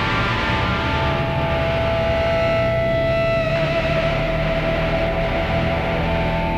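Live experimental music of long sustained electric tones, one note held throughout over a low drone, with upper tones dropping out about three and a half seconds in.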